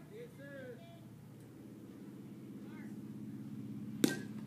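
Faint voices from across the field over a steady low hum that slowly grows louder; right at the end, a sharp crack of a bat hitting the ball.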